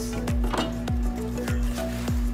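Background music with a steady beat: deep bass-drum hits that drop in pitch, a little under two a second, over a held low note.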